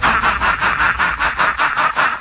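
Rapid rasping sawing sound effect, about six strokes a second, standing alone with the beat dropped out, and cutting off just after the end.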